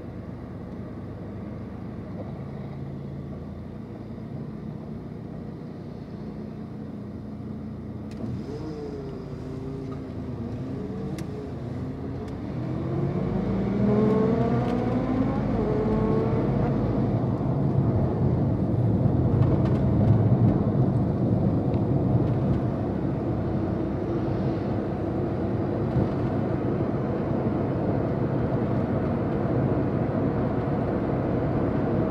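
A car waits at a stop with a low steady hum, then pulls away. A whine rises in pitch as it accelerates about halfway through, then settles into steady engine and road noise as it drives on.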